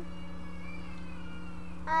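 A faint, high, wavering cry in the background that rises and then slowly falls, over a steady low electrical hum.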